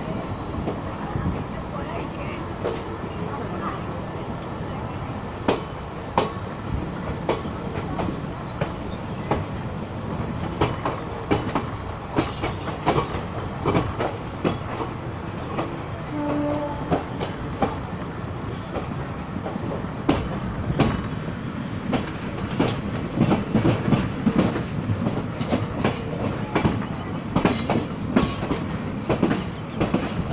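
Passenger train running along the track, heard from on board: a steady rumble of wheels on rails with irregular clicks over rail joints, which come thicker in the last third. A brief pitched tone sounds about sixteen seconds in.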